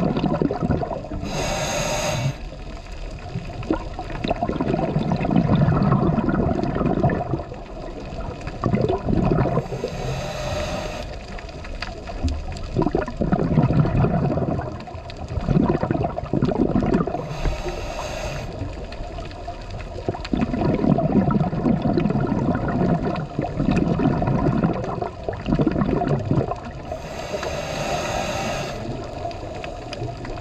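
Scuba regulator breathing heard underwater: four short hissing inhalations, roughly every eight seconds, each followed by several seconds of low, gurgling exhaust bubbles.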